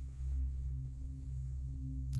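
A low, steady drone of sustained bass tones, with a fainter higher tone that swells and fades: an ambient background soundtrack.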